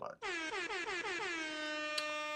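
A horn-like sound effect: one brassy tone that slides down in pitch and then holds steady, starting a moment in and lasting over two seconds.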